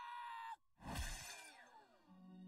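A high, held voice note that cuts off about half a second in, then a loud breathy gasp with a falling voice that fades away.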